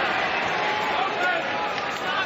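Boxing arena crowd: a steady din of many voices shouting together.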